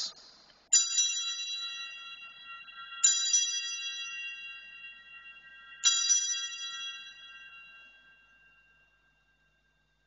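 Altar bell rung three times at the elevation of the consecrated host. Each strike rings out in several bright tones and fades slowly, the last dying away near the end.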